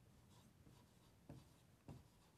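Faint sound of a felt-tip marker writing on a whiteboard, a few short strokes.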